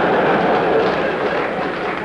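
A large lecture-hall audience laughing and applauding in a continuous wash of sound that eases off slightly near the end.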